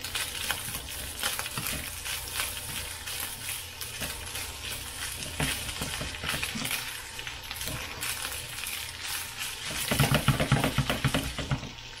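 Fried rice and steak sizzling in a hot skillet on high heat while a silicone spatula stirs and scrapes through it, with a run of louder stirring near the end.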